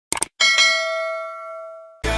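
Subscribe-button animation sound effect: a short click, then a single notification-bell ding that rings out and fades over about a second and a half.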